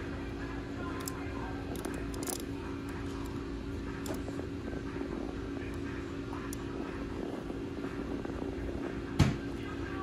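A Rex rabbit crunching pellets from a plastic bowl, heard as faint scattered small clicks over a steady background hum. A single sharp knock about nine seconds in.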